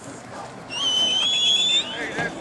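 A sports whistle blown once in a single high, steady blast of about a second, starting about two-thirds of a second in, blowing the play dead after the tackle.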